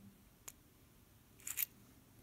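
Small metallic clicks and a brief scrape as a plug follower pushes the plug out of a round pin-tumbler lock cylinder, keeping the top pins and springs in the shell: one faint tick about half a second in, then a short cluster of sharper clicks about a second and a half in.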